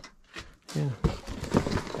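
A few light knocks and clatter of objects being handled amid clutter, around one short spoken "yeah"; the first half-second or so is almost silent.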